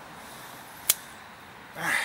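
A single sharp click about halfway through, then a short rustling swell near the end, as small hand tools and a lawn mower carburetor are handled.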